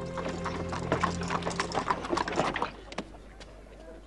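Horse hooves clip-clopping as a horse-drawn carriage arrives, a quick run of hoofbeats that stops at about two and a half seconds. Held background music notes fade out under the hoofbeats.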